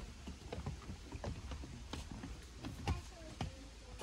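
Several people's footsteps on a wooden boardwalk and stairs: irregular knocks on the planks over a steady low rumble.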